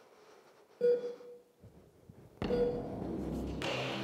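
A short ringing tone about a second in, then the soundtrack of an old black-and-white film clip cuts in suddenly past the middle as a steady hiss with a low rumble underneath.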